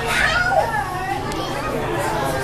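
Indistinct chatter of visitors, with children's voices calling and talking, over a steady low hum.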